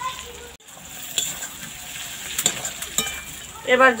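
Fried potatoes and lentil dumplings stirred into hot spiced onion masala in a metal karai with a metal spatula: a steady sizzle, with a few sharp clicks of the spatula against the pan.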